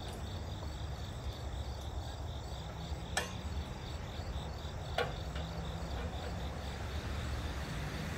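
High chirping that pulses at an even rate, like insects, over a steady low rumble, with two sharp clicks about three and five seconds in.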